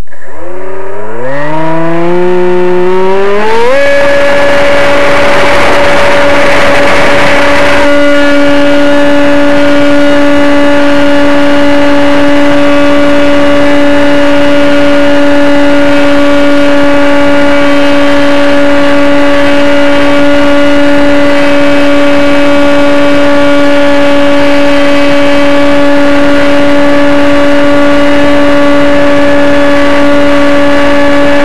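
Model airplane's motor and propeller, close to the onboard camera, throttling up for takeoff. The pitch rises steeply for about three and a half seconds, then holds at a steady high drone at full throttle. A rushing noise lies under it for a few seconds after the motor reaches speed.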